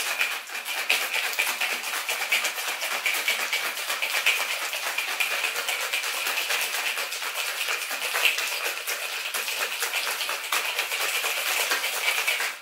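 Ice rattling hard inside a copper cocktail shaker being shaken vigorously, with a whisk spring inside to whip the egg white into foam. A dense, fast, steady rattle throughout.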